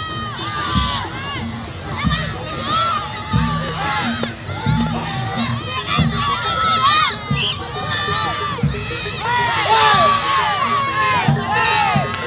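Many children shouting and shrieking together, their high voices overlapping continuously with bursts of cheering.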